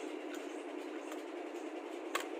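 Steady hiss with two faint clicks, about a third of a second and a second in, from handling the drum magazine of an M4-style rifle.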